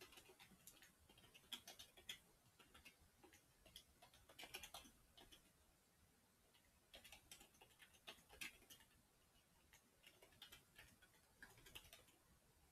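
Faint clicking of a computer keyboard being typed on, the keystrokes coming in quick runs separated by short pauses.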